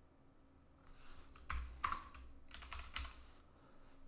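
Computer keyboard typing: a few short runs of keystrokes, starting about a second in.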